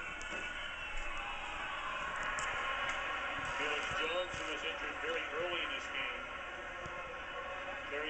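Televised NFL game sound played through a TV's speakers and picked up in the room: a steady stadium crowd din, with a broadcast commentator's voice faintly over it from a few seconds in.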